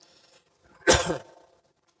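A man coughs once, a single sharp burst about a second in that trails off quickly.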